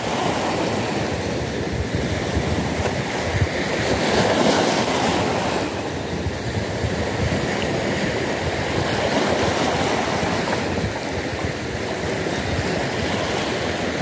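Small sea waves washing in and breaking over a rocky shoreline: a steady wash of surf that swells a little as each wave comes in.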